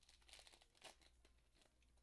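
Faint crinkling and tearing of a Pokémon card booster pack's foil wrapper being torn open by hand, with scattered small crackles.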